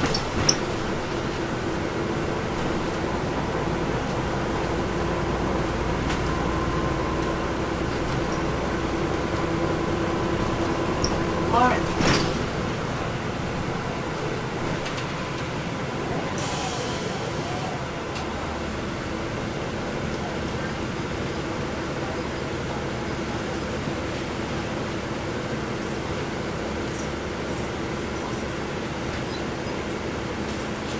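Interior of a NABI transit bus under way: its Cummins ISL9 diesel engine and drivetrain run with a steady drone and a held whine, over road noise. About 12 seconds in there is a short squeal, a brief hiss of air follows a few seconds later, and the drone eases off slightly as the bus slows.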